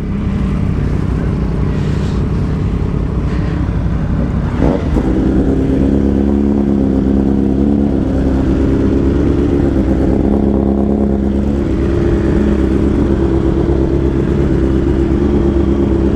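Motorcycle engines idling close by with a steady low rumble. About five seconds in there is a short sharp burst, after which a steadier, higher engine hum joins in and holds.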